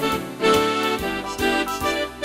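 Lowrey Fanfare home organ playing a melody over one of its full-band auto-accompaniment styles, with bass and drum beats about twice a second.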